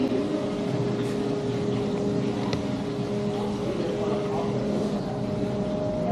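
Steady machine hum holding one low tone, over a noisy indoor ambience.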